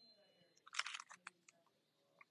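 Faint crinkling of a cellophane craft packet being picked up: a short cluster of crackles just under a second in.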